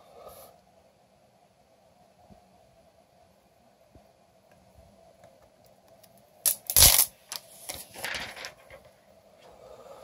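Mostly quiet room tone with a faint steady hum and a few soft clicks. A sudden loud bump of handling noise comes just before seven seconds in, followed by about a second of lighter rustling.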